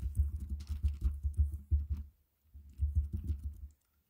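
Fingers typing in quick runs of dull taps, with a short pause about two seconds in, as someone searches for something on a device.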